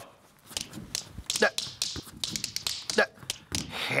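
Tap shoes' metal taps clicking against the floor in a quick tap-dance sequence: a fast, irregular run of sharp clicks that begins about half a second in.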